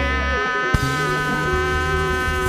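Live band holding a sustained, buzzing chord as a song ends, with a low bass note underneath. A single sharp knock sounds about three-quarters of a second in.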